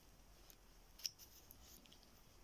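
Near silence broken by a few faint clicks and rustles as a Boston terrier puppy mouths and paws a plush toy. The sharpest click comes about a second in.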